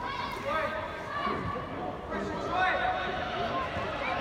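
Indistinct voices of players and spectators calling out and talking across a large indoor football hall, with no single clear voice in front.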